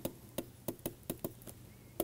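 Stylus tapping on a pen-tablet surface as capital letters are handwritten: a quick, irregular series of light taps, about eight in two seconds.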